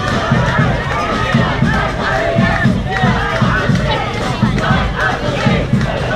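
Large crowd of protesters shouting and yelling over one another, many voices at once.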